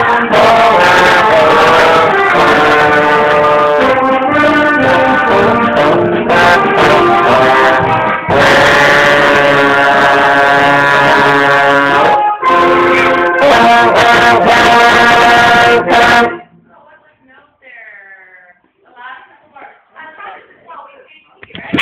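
Concert band playing a piece, with a slide trombone playing right beside the microphone. The band stops suddenly about sixteen seconds in, leaving only faint voices.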